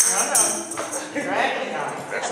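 A woman singing a gospel song into a microphone, with a few tambourine strokes in time near the start.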